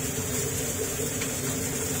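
A steady machine hum with a constant high hiss, unchanging in level.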